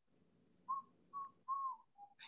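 Faint whistling: three short notes at about the same pitch, the third longer with a slight rise and fall.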